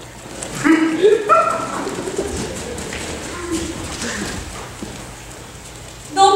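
A person's voice making a few short, pitch-bending calls about a second in, then a low room murmur.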